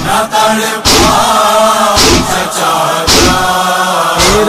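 Nauha (Muharram lament) being chanted, with voices holding a drawn-out refrain. Loud, sharp beats land about once a second, the matam (chest-beating) that keeps time in a nauha.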